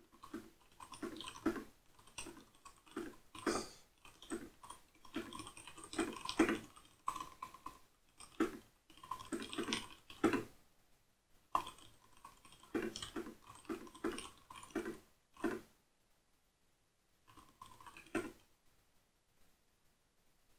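Typing on a computer keyboard: irregular runs of keystroke clicks with brief pauses, stopping a little under two seconds before the end.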